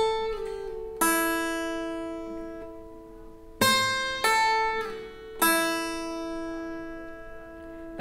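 Acoustic guitar played twice on the high E string in one four-note run. The note at the 8th fret is picked once, pulled off to the 5th fret, slid down to the 2nd fret, then pulled off to the open string, which rings and fades. The second run starts about three and a half seconds in.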